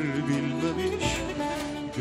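Bağlama, the Turkish long-necked lute, plucked in an instrumental passage of a Turkish folk song.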